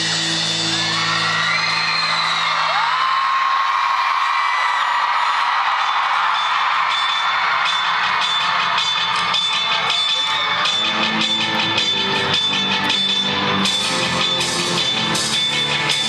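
Live rock band recorded from the audience in an arena. A held chord dies away in the first few seconds, leaving crowd screams and whoops over a thin sustained sound. The music then builds back up with a quickening beat and a low part returning toward the end.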